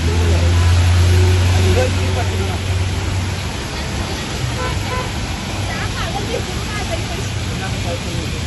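Heavy rain and traffic on a flooded city street: a steady hiss of rain and tyres on wet road, with a city bus's engine running close by for the first three seconds or so before it fades away.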